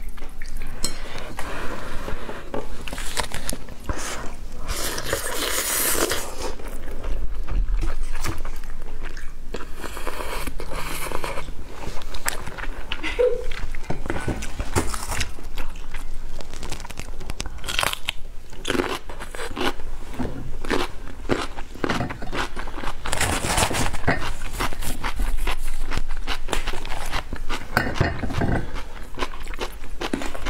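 Close-miked eating of spicy fire noodles: a mouth slurping and chewing the noodles, with a dense run of small wet clicks and smacks.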